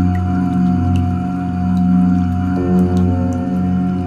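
Deep, sustained chanting of the mantra 'Om' as one long low drone, its tone colour shifting about two and a half seconds in, with faint high tinkling ticks above it.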